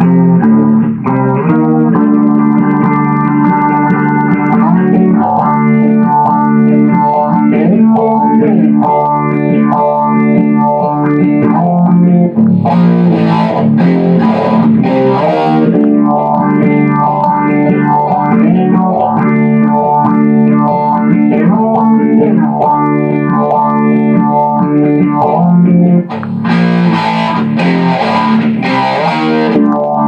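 Electric guitar played through Boss DS-1 Distortion and Boss PH-1R Phaser pedals: sustained notes and riffs. Two brighter stretches of harder-strummed chords come about halfway through and again near the end.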